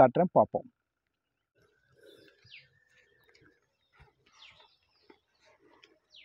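Faint bird calls, short falling chirps about every two seconds, after a man's voice stops in the first moment. A few soft knocks, as of footsteps on stone steps, come in between.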